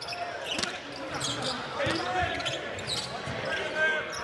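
Live basketball game sound: a basketball bouncing on the hardwood court, with the murmur of the arena crowd.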